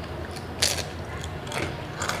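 Crunchy bites and chewing of a crisp deep-fried, battered snack on a skewer, heard as crackling crunches close to the microphone. The loudest crunch comes a little after half a second in, with another at about one and a half seconds.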